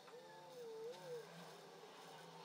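Near silence, with a faint pitched call that rises and falls, lasting about a second near the start.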